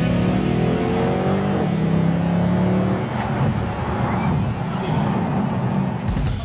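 Car engine accelerating, its pitch rising over the first two seconds, then running on more roughly. Heard from inside the car's cabin.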